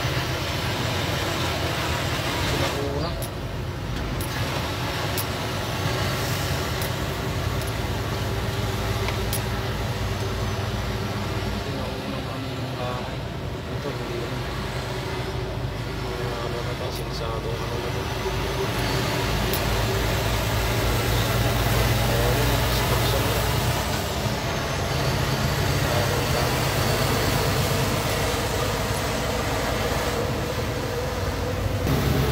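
Engine and road noise heard from inside a moving truck's cab: a steady low engine hum with a rushing wash of tyre and wind noise, swelling a little in level about two-thirds of the way through.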